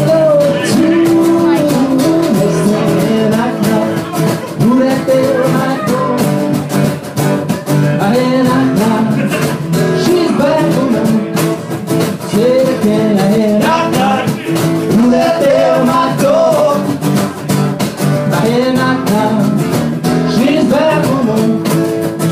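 A live acoustic band playing: strummed acoustic guitars, bass and cajon keeping a steady beat.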